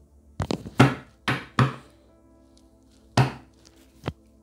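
Tarot cards and deck knocked and slapped onto a tabletop: a quick run of sharp thuds in the first second and a half, then one more about three seconds in. Faint background music plays underneath.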